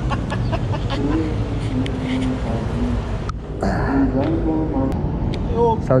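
People's voices talking over a steady low background rumble, with the sound dropping out briefly about three seconds in.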